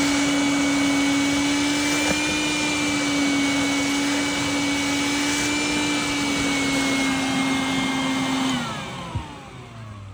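Shop vac motor running steadily with a high whine and rushing air, then shut off near the end, its pitch falling as the motor spins down.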